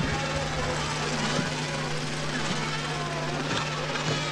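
A steady low hum with indistinct voices over it.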